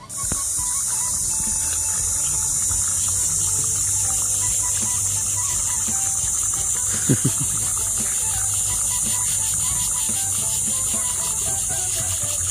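Hot oil sizzling steadily in a frying pan as sago luchi (sabudana puris) fry, a constant high hiss that cuts in and out abruptly.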